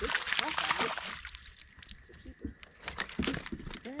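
A hooked crappie thrashing and splashing at the water's surface beside the boat as it is reeled in, with a loud burst of splashing in the first second and smaller scattered splashes about three seconds in.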